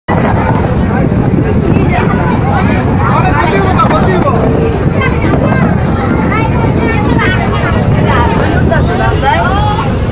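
Several people talking over one another aboard a boat, over a steady low noise from the moving boat.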